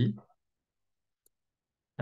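A single faint computer mouse click a little over a second in, amid otherwise silent gaps between words.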